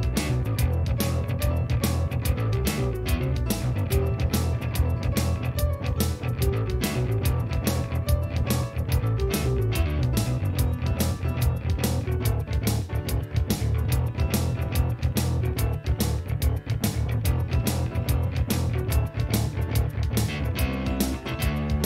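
Live-looped instrumental played on keyboards and synthesizers: a steady drum beat under a heavy bass line, with a melody played over it in an improvised rock arrangement.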